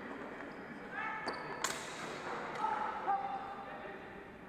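Voices echoing in a large sports hall, with one sharp clack about a second and a half in.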